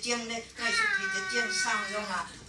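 An elderly woman speaking into a microphone in a language other than English, with one long drawn-out vowel in the middle that falls in pitch and then holds level.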